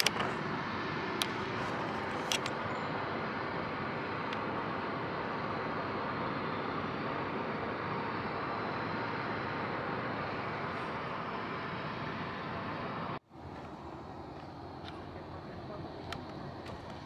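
Steady rushing travel noise from inside a moving vehicle. Near the end it cuts off abruptly to the quieter road noise of a car cabin.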